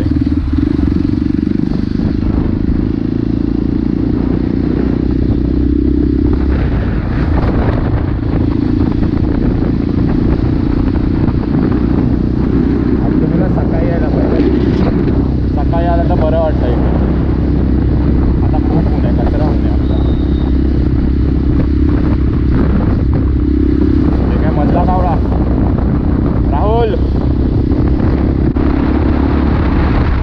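Motorcycle riding at steady road speed: a continuous engine and wind rumble on the bike-mounted camera, with short snatches of a voice now and then.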